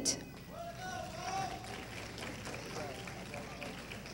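Faint, indistinct murmur of voices in a large hall, in the pause between names read over a PA. The echoing tail of the amplified voice dies away right at the start.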